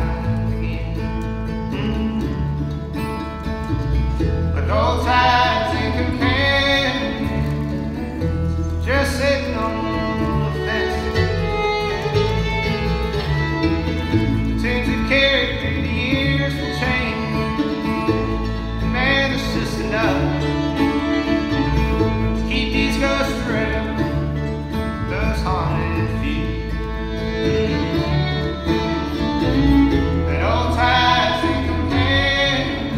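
Live acoustic string band playing a bluegrass-style passage between verses: mandolin, fiddle and upright bass.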